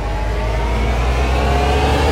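A vehicle engine revving up, its pitch rising slowly and steadily as it grows louder, over a deep rumble.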